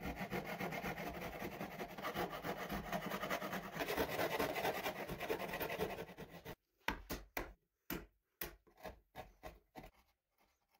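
Thin-bladed hand saw cutting into softwood 2x6 stock in quick, steady back-and-forth strokes: sawing the sides of a pocket that will hold the chair seat. About six and a half seconds in the continuous sawing stops suddenly and gives way to separate short strokes, about two a second.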